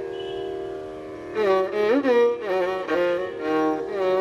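Carnatic violin playing a slow melody of gliding, wavering ornamented notes over a steady drone, with no percussion. It holds a quieter note for the first second or so, then moves into louder phrases. The music is in raga Karnataka Devagandhari.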